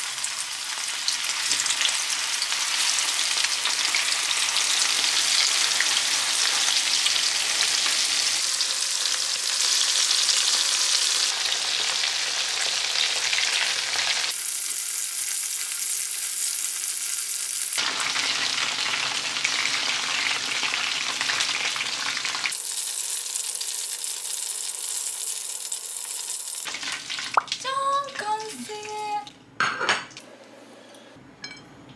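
Chicken karaage (floured chicken thigh pieces) deep-frying in hot oil in a frying pan: a loud, steady sizzle that runs through several cuts and stops a few seconds before the end. A few short pitched sounds follow it.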